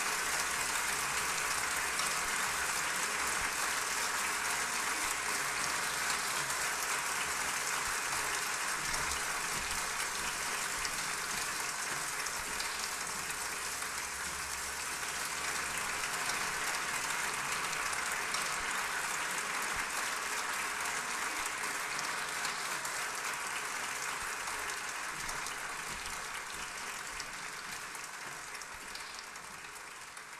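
Audience applauding steadily after the piano piece ends, fading away over the last few seconds.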